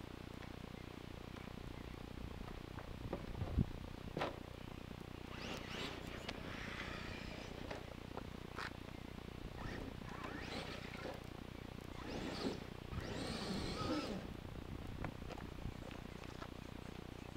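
Electric RC monster truck (Traxxas E-Maxx) driving on a dirt track some way off: several short bursts of motor and drivetrain noise as it accelerates, the longest near the end, with a few sharp knocks in between.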